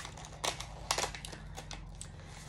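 Popping candy crackling inside a mouth: a scatter of small, sharp snaps at irregular intervals.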